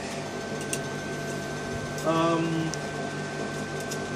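Steady high-pitched whine over a low hum from a running IGBT half-bridge driver and its high-voltage transformer. About two seconds in, a short hummed voice sound lies over it.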